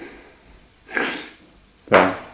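A person's brief breathy laugh: two short bursts about a second apart.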